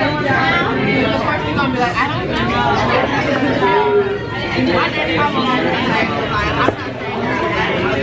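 Restaurant chatter: voices talking throughout, none of it clear words, with a single sharp click about two-thirds of the way through.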